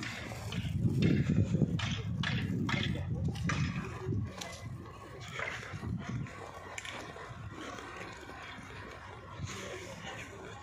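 Footsteps crunching on packed snow, about two steps a second, over a low rumble that is loudest in the first few seconds and fades after about four seconds.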